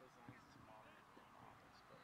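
Near silence, with faint distant voices of players calling on the field.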